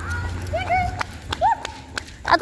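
A woman's short sing-song calls urging a small leashed dog on, with footsteps and the dog's paws pattering on the pavement and a low rumble of walking handling noise.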